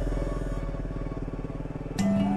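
Motorcycle engine running steadily at low speed with a fast, even pulse, under faint background music.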